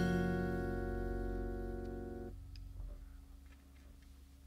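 The final chord of a jazz quartet's tune on saxophone, keyboard, upright bass and drums, held and fading after a last drum-kit stroke at the start. The chord stops suddenly a little over two seconds in, the bass dies away just after, and only quiet room tone is left.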